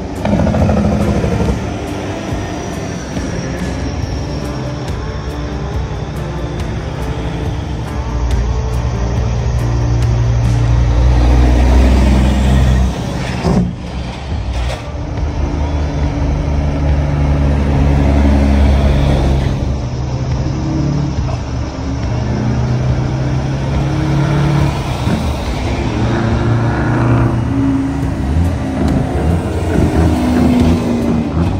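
Diesel semi trucks driving past one after another in a slow procession, their engines swelling and fading as each truck passes. Music plays alongside.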